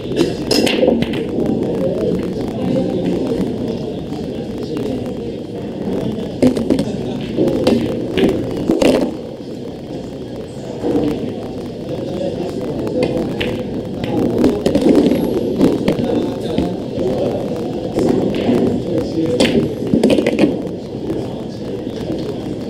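Pool balls clacking: a 9-ball break shot just after the start, then a few more sharp clicks of cue and balls, over a steady background of voices.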